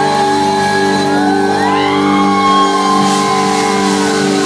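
Live band holding one sustained chord on electric guitar and keyboard, with higher notes sliding up over it.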